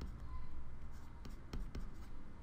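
Handwriting: a pen scratching faintly on a writing surface in a series of short strokes as a word and number are written.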